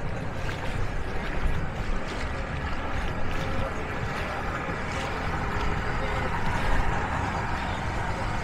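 Steady outdoor mix of moving water and distant boat motor noise, with no single sound standing out.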